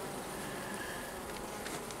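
Honey bees buzzing in an open nucleus hive: a steady hum of many bees.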